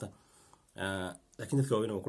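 Only speech: a man talking, with a short pause near the start.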